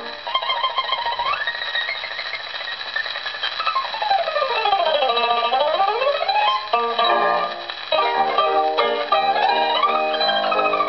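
Old mandolin solo recording played on a gramophone: a bright, tremolo melody with a fast run that sweeps down and climbs back up midway, then lower notes and chords fill in over the last few seconds. The sound is narrow and lacks top end, as from an early shellac record.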